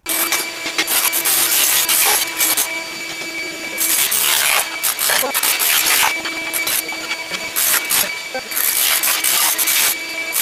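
Electric chipping hammer chiselling ceramic tile and thinset off a floor, tile cracking and scraping under the bit, starting and stopping in short runs, over a shop vacuum running steadily.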